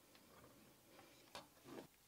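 Near silence with faint handling noise: a few small clicks and rustles as wires and a plastic electronics enclosure are handled, two of them a little more distinct in the second half.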